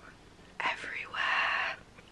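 A woman's voice whispering briefly, breathy and without pitch, a second or so into a short pause.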